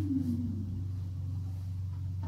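A machine running with a steady low hum, its pitch dropping slightly at the start.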